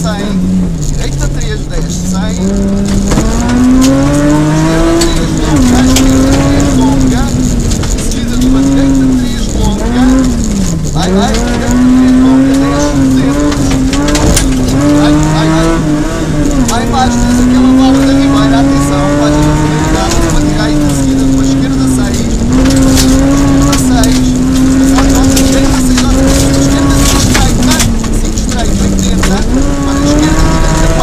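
Rally car engine heard from inside the cabin, revving hard and rising and falling in pitch with gear changes and lifts. The revs drop sharply about a second in, near the middle and near the end. Gravel ticks and crackles under the car throughout.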